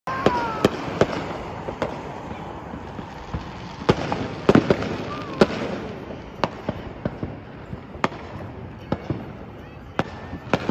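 Fireworks going off: an irregular run of sharp bangs and pops over a steady rumbling haze, busiest about four to five seconds in.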